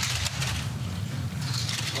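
Two-man bobsleigh running through a curve on the ice track at about 114 km/h: a steady low rumble from its steel runners on the ice, with a hiss above it.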